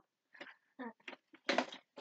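A girl laughing in short bursts, the loudest burst about one and a half seconds in.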